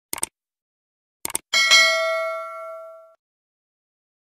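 Mouse-click sound effects, a quick pair at the start and another pair about a second later, then a bell ding that rings for about a second and a half and fades out. This is the subscribe-and-notification-bell sound effect.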